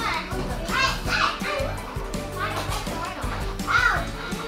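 Young child's short high-pitched vocal sounds, babble or squeals rather than words, several times with the loudest near the end, over background music.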